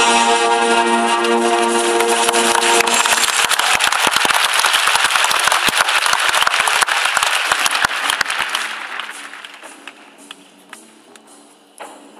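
Sustained chords of the show's music for the first few seconds. Then audience applause takes over and stays loud for about five seconds before dying away about nine seconds in. Quiet music carries on underneath near the end.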